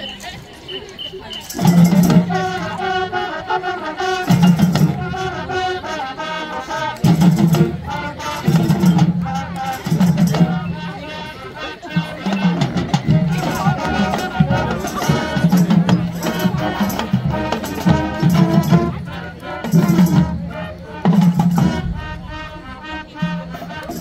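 Marching band playing, brass, woodwinds and percussion together, coming in loudly about a second and a half in after crowd chatter.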